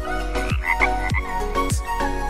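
Frog croaking in a quick series of short calls about half a second to a second in, over background music with a steady beat.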